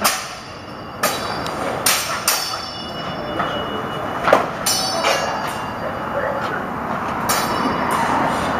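Longsword blades clashing during sparring: a run of sharp metallic strikes at irregular intervals, several of them ringing briefly after contact.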